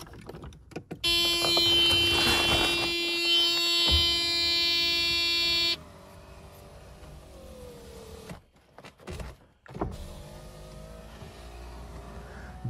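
Mercedes-Benz W124 electric window motor driving the door glass on its freshly greased regulator. A loud, steady whine starts about a second in and cuts off sharply after nearly five seconds. It is followed by a quieter run whose pitch sags as it goes, and another quieter run near the end.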